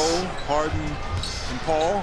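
A basketball being dribbled on a hardwood court, heard in the game broadcast's audio under a quieter commentator's voice.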